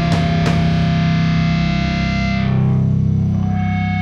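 Rock band playing live: a couple of drum and cymbal hits in the first half-second, then a sustained electric guitar chord over bass. About two and a half seconds in, the bright top of the chord sweeps away, leaving a single held ringing note and the bass.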